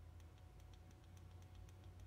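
Near silence: room tone with a low steady hum and faint, rapid clicking, about four clicks a second.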